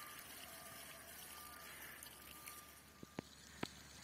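Faint outdoor background hiss, broken about three seconds in by three short sharp clicks, the last one the loudest.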